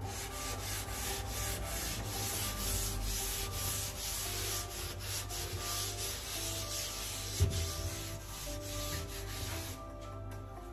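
Cloth wiping hard over the underside of a kitchen range hood and cabinet, quick back-and-forth scrubbing strokes that stop near the end. There is one sharp knock about seven seconds in.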